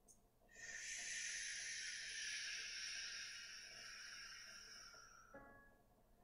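One long exhale of breath, a soft hiss lasting about five seconds that fades away near the end.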